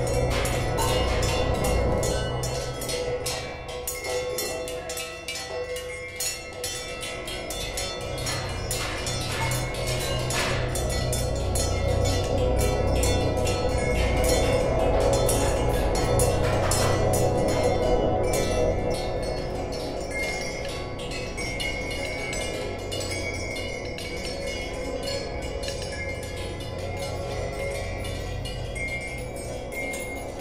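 Home-made metal percussion: hanging metal tubes, gongs and other scrap-metal pieces struck with sticks, many hits in quick succession with their ringing tones overlapping, louder toward the middle.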